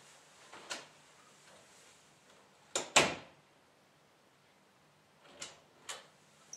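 An interior door being shut, its latch clicking and the door knocking into its frame twice in quick succession about three seconds in. Near the end the doorknob and latch click again as the door is opened.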